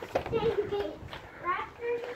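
Children's voices chattering and calling, not clear enough to make out words.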